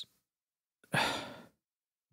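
A man's single audible breath into the microphone about a second in, lasting about half a second and fading away.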